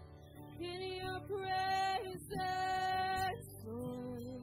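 A live worship band playing a slow song, with high sung vocals holding two long notes in the middle over drums and guitars.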